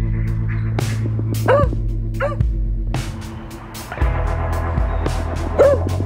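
Background music with low sustained notes, over which a small dog yips three times: two short yips about a second and a half and two seconds in, and one more near the end.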